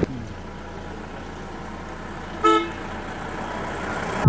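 A single short vehicle horn toot about two and a half seconds in, over a low steady rumble.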